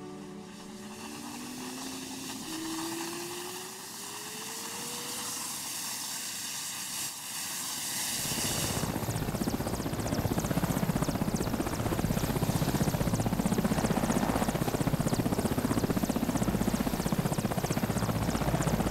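Military transport helicopter starting up: a turbine whine rises steadily in pitch for the first few seconds. From about eight seconds in, the louder, rapid, even chop of the main rotor takes over.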